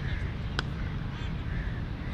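A cricket ball struck by a bat: one sharp crack about half a second in. Crows caw in the background.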